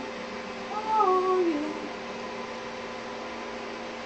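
A woman's short sing-song vocal sound, about a second long, falling in pitch, over a steady faint hum.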